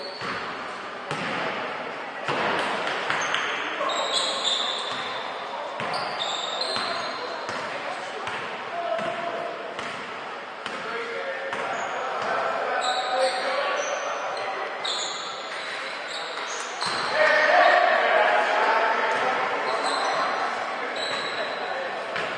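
Basketball game in a large gym hall: a ball bouncing on the court and sneakers squeaking in short high chirps, under indistinct players' voices that echo in the hall. The voices get louder and busier about three-quarters of the way through.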